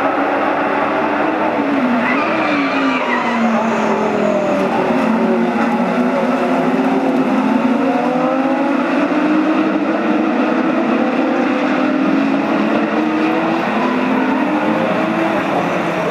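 A pack of GT Cup race cars (Lamborghini Gallardo, Porsches and Ferraris) running through a corner together, many engines heard at once. Their pitch falls about two seconds in as they brake for the corner, then climbs steadily as they accelerate away.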